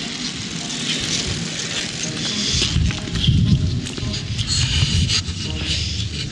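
Wind rushing over the microphone as two road bicycles ride past close by, with faint voices in the background.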